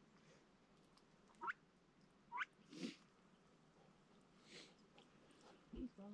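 Ducks giving two short, rising squeaky calls about a second apart, then two soft brief rustles and a low thump near the end.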